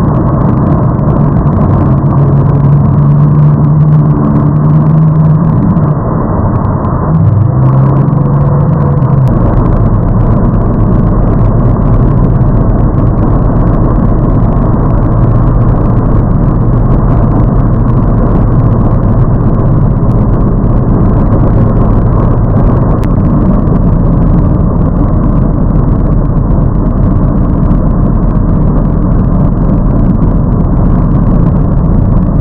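Tow boat's engine running loud and steady at speed while pulling an inflatable tube, with a rushing noise over it. Its pitch shifts in the first several seconds, then a lower, steady drone sets in from about nine seconds in.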